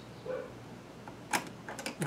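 Small plastic keyhole cover clicking against a car's exterior door handle as it is lined up to be refitted: one sharp click about halfway through, then a few lighter ticks near the end.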